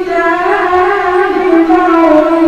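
A boy's unaccompanied voice chanting melodic Quran recitation (qirat) into a microphone, holding long, slightly wavering notes, with a short dip in pitch and a new phrase starting near the end.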